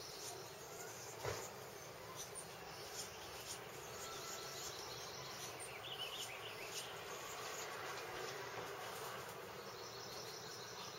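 Faint outdoor ambience: a steady hiss with insects buzzing, a single click about a second in, and a brief high wavering chirp about six seconds in.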